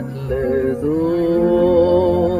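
Male voice singing a slow devotional song over soft instrumental accompaniment, holding one long note with a slight vibrato.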